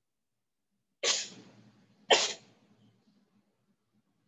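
A person sneezing twice, about a second apart, each a sharp burst that quickly fades.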